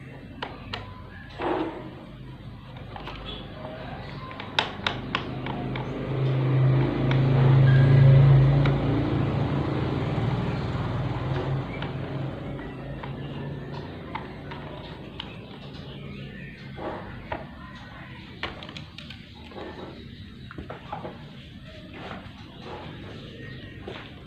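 A screwdriver turning out the screw of a stand fan's plastic rear motor cover, with scattered clicks and knocks of the tool against the plastic housing. Under it runs a low steady hum that swells louder about six to ten seconds in.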